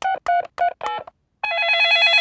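Cartoon mobile phone dialling: four short keypad beeps about a third of a second apart, then, halfway through, a warbling electronic phone ring as the call goes through.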